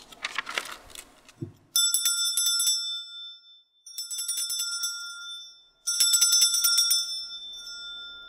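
A small brass hand bell shaken in three rounds of rapid ringing, about two seconds apart, each lasting about a second and then dying away in a lingering ring.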